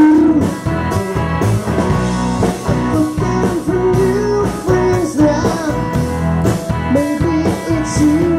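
Live rock band playing: electric guitar, mandolin and keyboard over a drum kit keeping a steady beat, with a bending lead melody line.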